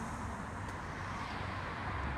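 Mercedes A180's petrol four-cylinder engine idling steadily, a low even hum from behind the car.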